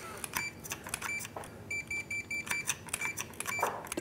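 Fluke 287 digital multimeter giving short, irregular continuity beeps, with a quick run of them in the middle, as the pop bumper's contact disc and ring are pressed together, with light clicks of the contacts. The beeps come only sporadically because the continuity beep needs a very low resistance, so the contacts sound less reliable than they are.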